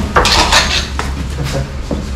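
A brief loud scraping rustle, then a sharp knock about a second in: a woven sack of paddy being shifted and a snake-catching stick knocking against it.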